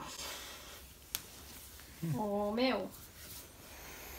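A person's short wordless vocal sound, about two seconds in, that rises and then falls in pitch. It comes after a soft hiss of breath or rustling and a single click.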